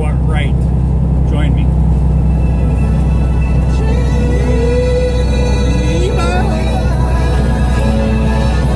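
1970s synthesizer music playing in a truck cab, with a long held synth note gliding up and holding from about four to six seconds in. Under it runs the steady low drone of the truck's engine and road noise.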